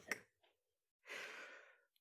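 A person's long breathy exhale, starting about a second in and fading out within about a second; otherwise near silence.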